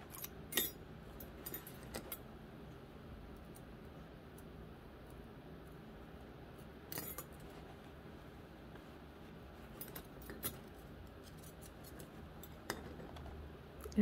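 A few scattered small clicks and ticks of wire and a fine-pointed tool against a metal hoop and beads as wire ends are pushed down, the sharpest about half a second in and about seven seconds in, over a faint steady hum.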